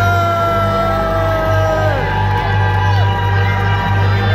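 Loud arena show music with a heavy, steady bass, and the audience yelling and whooping over it; one long held yell falls off in pitch about two seconds in.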